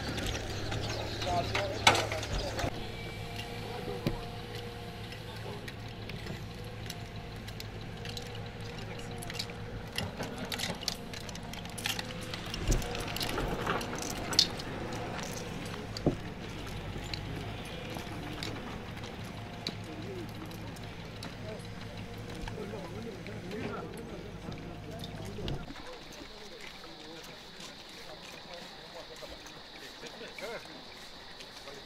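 Outdoor field ambience of soldiers: indistinct voices talking in the background, with scattered clicks and knocks of gear and a steady low hum beneath. Near the end the hum drops away, leaving a quieter steady high-pitched hiss.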